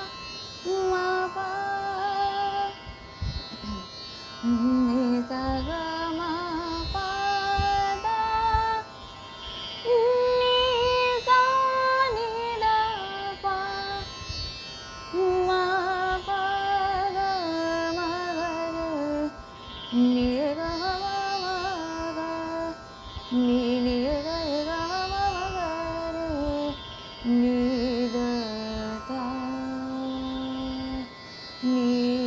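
A woman singing a thumri-style passage in Hindustani classical music, blending raga Yaman with Khamaj: held notes joined by slides and quick wavering ornaments, with short breath breaks, over a faint steady drone.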